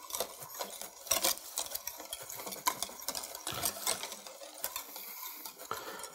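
Wire whisk stirring thick polenta in a stainless steel pot, a run of irregular clicks and scrapes as the wires knock against the pot, working in freshly added grated parmesan.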